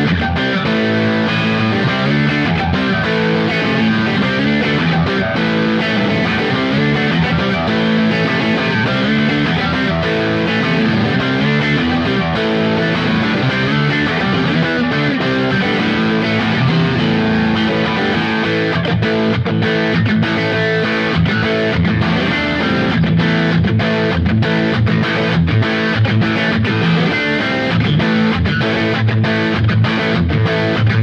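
Telecaster-style electric guitar strummed with a pick, playing a chord riff in a steady rhythm.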